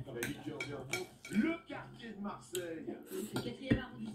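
Cutlery and ceramic dishes clinking during a meal: a series of separate clicks against a plate, with one louder knock near the end.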